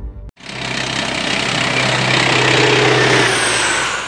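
An aircraft flying past: a loud engine noise that swells over about three seconds and begins to fade near the end.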